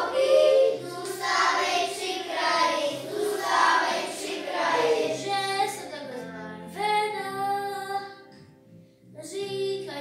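A group of children singing a song together with instrumental accompaniment; the music drops out briefly a little before nine seconds in and then starts again.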